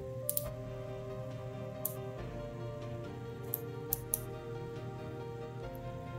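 Soft background music with long held notes, over a handful of light, sharp clicks as the plastic limbs and joints of a 1/6-scale action figure are handled.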